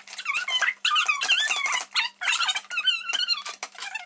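Squeaky, high-pitched chattering that sounds like children's voices sped up, with quick bending chirps of pitch and a faint steady hum under it.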